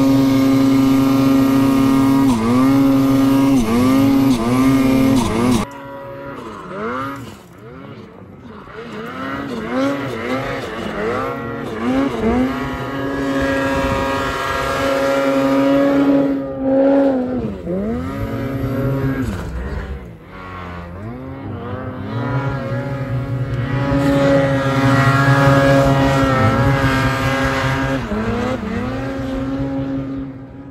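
Lynx snowmobile engine with a 146-inch track, revved up and down over and over as it works through deep powder, the pitch dropping and climbing with each burst of throttle. It is loud and close for the first several seconds, then suddenly farther off and quieter before swelling again in the second half.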